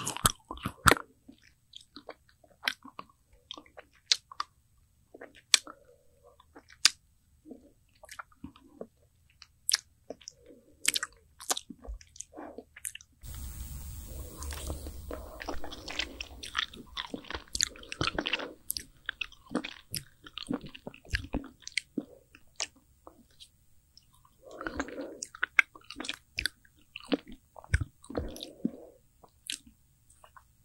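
Close-miked eating of an Okdongja ice-cream bar: biting and chewing off its frozen white milk coating, heard as scattered wet clicks and small crunches. A few seconds of denser rustling noise come about halfway through.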